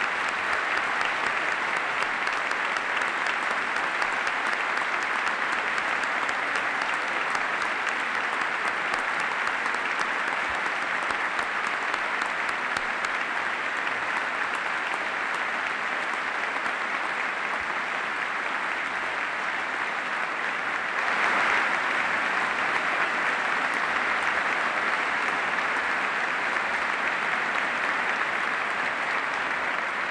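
Sustained applause from a large crowd, a steady dense clapping that swells a little louder about two-thirds of the way through.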